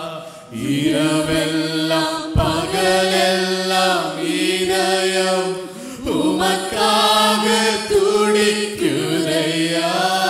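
A man singing a slow worship song into a microphone, drawing out long held notes that bend in pitch. Under the voice runs a steady low sustained tone.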